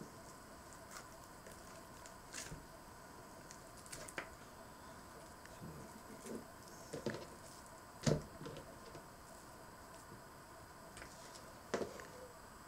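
Knife cutting and handling a raw salmon fillet on a plastic cutting board: scattered soft taps and wet squishy sounds, the firmest around two-thirds of the way in and again near the end, over a faint steady hum.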